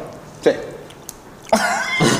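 Speech only: short replies from men's voices, a quick "eh?" about half a second in and a drawn-out "sí" near the end, with a quiet gap of room tone between.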